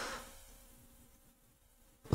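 Near silence: a pause in speech with only a faint steady hum, after the tail of a word right at the start.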